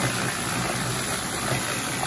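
A cement mixer converted to a gold trommel turning steadily under load, with a water jet spraying into its mesh barrel and water pouring out, over a steady engine drone.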